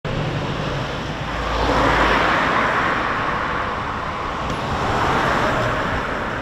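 Road traffic: a car passing on the street, loudest about two seconds in, over a low rumble that stops soon after.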